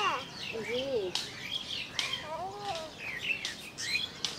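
Small birds chirping and twittering throughout, with a few short, high-pitched calls from a person's voice near the start and again just past halfway.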